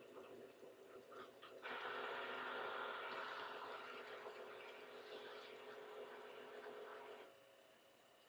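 Cricut Explore cutting machine powering up: a few faint clicks, then its motors run steadily for about five seconds as it initialises, and they stop near the end.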